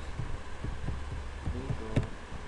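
Irregular keystrokes on a computer keyboard as a name is typed into a form, heard as soft low taps over a steady low electrical hum.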